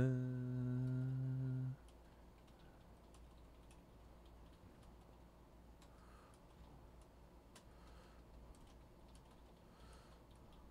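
A man hums a low note, holding it steady before it stops a little under two seconds in, then faint, scattered clicks of typing on a computer keyboard.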